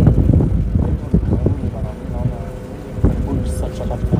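Wind rumbling on the microphone aboard a moving boat, heaviest in the first second, with faint voices in the middle.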